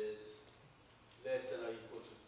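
A man's voice lecturing, with a pause of about a second in the middle.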